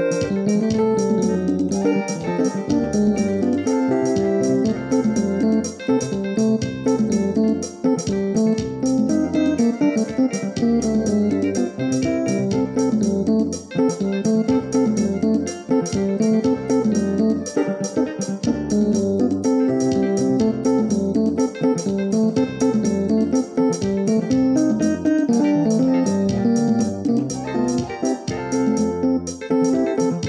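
Electronic arranger keyboard played in F major, a guitar-like voice over a stepping bass line with a fast, steady ticking rhythm.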